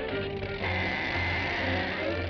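Cartoon soundtrack music. Over it, from about half a second in until just before the end, a steady high buzzing whine holds one pitch.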